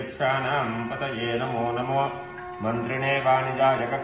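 Male voice chanting a Hindu mantra in a steady, near-monotone recitation, pausing briefly about two and a half seconds in.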